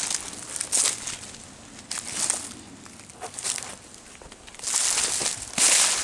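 Footsteps crunching and rustling through dry fallen leaves on a forest trail, coming in uneven bursts, the loudest near the end.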